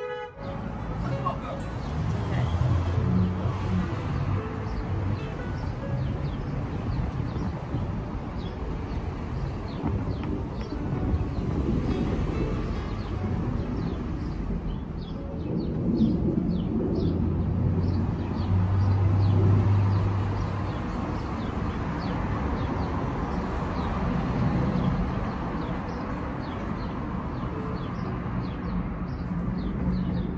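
Street traffic: vehicles passing with a low engine hum that swells about three seconds in and again around nineteen seconds, over faint bird chirps.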